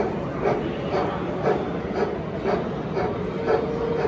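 Sound-fitted model steam locomotive chuffing in an even rhythm of about two beats a second as it runs slowly. A steady tone comes in near the end.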